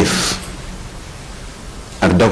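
Steady low hiss of background noise in a pause between a man's spoken phrases, opening with a short breathy hiss.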